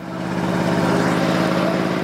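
A steady engine drone, growing louder over the first half second and then holding level.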